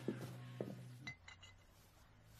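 Two soft knocks, then a few quick, light clinks about a second in, like small hard objects such as glass touching.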